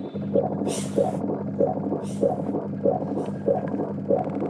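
Electroacoustic music built from field recordings of an interview and a dialysis treatment: a steady low hum under a rhythmic pulse that comes a little under twice a second, with a few brief swells of hiss.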